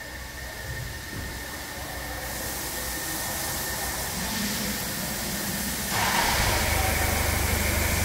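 Steady hissing noise that slowly grows louder; about six seconds in, a louder low hum joins it.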